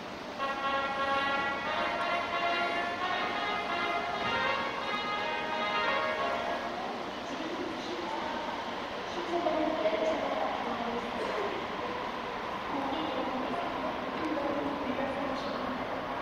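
Station approach chime from the platform loudspeakers: a short melody of held electronic notes, lasting about six seconds, signalling that a commuter train is approaching. It is followed by an announcement voice over the loudspeakers, against steady platform background noise.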